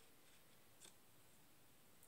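Near silence: room tone, with one faint short click a little before the middle.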